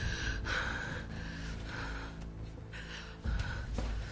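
A woman gasping and breathing hard in distress, with short breaths coming about twice a second over a low steady background tone. A brief low thump comes about three seconds in.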